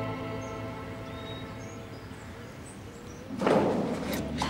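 Sad string music fading out, with a few faint bird chirps early on. Near the end, a sudden loud scraping begins as a metal blade is pried into the seam of a wooden wall panel.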